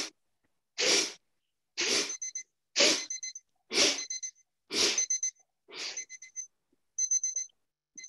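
Forceful rhythmic exhalations through the nose, about one sharp puff a second, in the manner of kapalabhati pranayama, growing weaker near the end. A faint high ringing tone stutters after several of the puffs.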